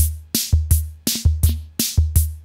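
EKO ComputeRhythm, a 1972 analog drum machine, playing a programmed pattern. Deep ringing bass-drum thumps alternate with bright hissy noise hits in a steady, quick looping beat.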